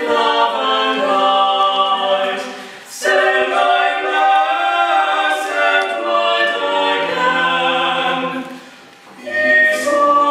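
Small mixed vocal quartet, two women and two men, singing a cappella in parts in a church. Phrases break off briefly about two and a half seconds in and again near the end, where a low male voice comes in.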